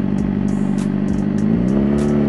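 Suzuki GSX-R sportbike's engine running steadily under way, its pitch rising near the end as the bike accelerates.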